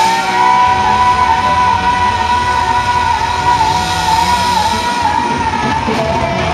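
Rock band playing live, loud, with one high note held for about five seconds over the band, wavering slightly and dropping in pitch near the end.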